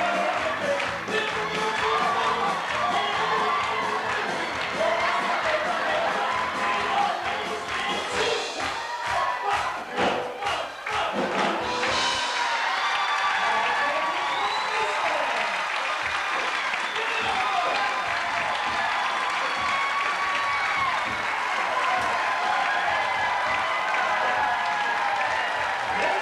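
Live cover-band music with crowd noise and cheering over it, and a run of sharp hits or claps between about eight and twelve seconds in.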